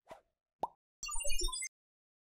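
Sound effects of an animated logo sting: a short tick, then a pop about half a second in. Then comes a brief jingle of four quick notes stepping down in pitch and a final higher note, over high glittering tones and a low thump. The jingle is the loudest part.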